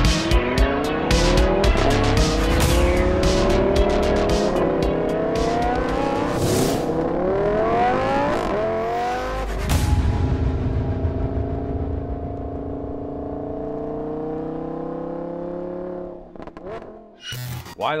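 Lamborghini Huracan LP580-2's V10 engine, tuned and fitted with an aftermarket exhaust, accelerating hard: its pitch climbs and breaks off at an upshift four times in about nine seconds. It then holds a steady, slowly falling note for several seconds. Music with a beat plays over it.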